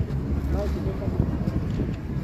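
Wind buffeting the microphone as a low rumble, strongest about half a second in, with people talking faintly in the background.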